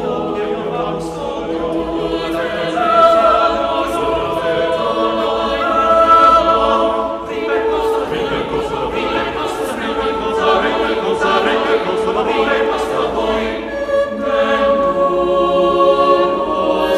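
Small unaccompanied vocal ensemble singing a five-voice Italian madrigal, several voice parts holding and moving between overlapping sustained notes in counterpoint.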